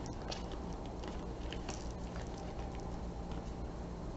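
Faint crinkling and scattered small clicks of an eyeshadow palette's packaging being picked at with the fingers, which is hard to open.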